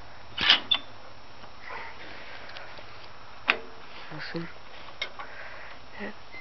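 A few short clicks and knocks over a low, steady background, the loudest about half a second in, as the 1956 Farmall Cub tractor's controls and the camera are handled. The engine is not yet running.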